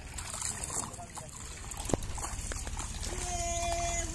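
Water trickling and splashing off a bamboo-framed fishing net lifted from shallow water, with a man wading. A single sharp knock about two seconds in, and a steady held tone through the last second.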